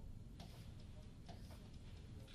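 Faint, irregular light ticks and taps of a stylus on a touchscreen display as lines are drawn, starting about half a second in.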